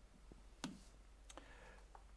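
Two faint, sharp clicks of a computer mouse about two-thirds of a second apart, with a softer third click near the end, over near silence.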